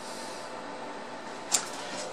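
Steady low hum and hiss from a bench of powered-up electronic test equipment, with one sharp click about one and a half seconds in.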